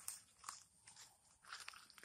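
Faint, irregular crunching and rustling of dry leaves and twigs underfoot, a few separate crunches about half a second to a second apart.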